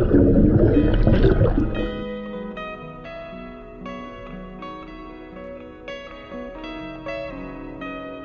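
A loud rushing noise, typical of an underwater microphone, for about the first two seconds. It then gives way to background music of plucked guitar notes.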